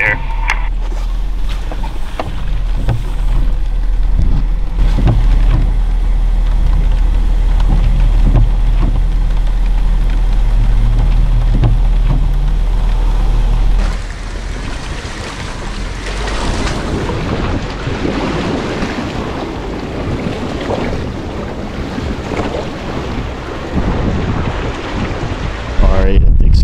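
Jeep Wrangler driving through a deep muddy puddle: a steady low engine and wind drone at first, then, from about halfway, the front tyre splashing and churning through muddy water.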